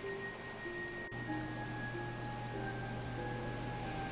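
Soft, slow background score: single sustained chime-like notes following one another in a sparse melody, with no beat.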